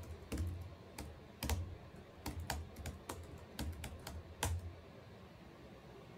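Computer keyboard typing: a run of irregular keystrokes for about four and a half seconds, then they stop.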